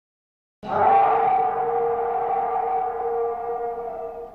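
A steady sustained tone of a few held pitches that starts abruptly just over half a second in and then slowly fades.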